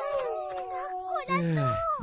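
Cartoon character voices calling out in drawn-out, wailing tones, ending in a long falling groan near the end.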